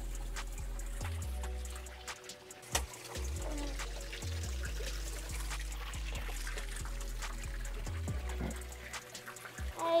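Background music with a steady bass line, over water pouring from a small rock waterfall into a tub pond, with a few sharp splashes.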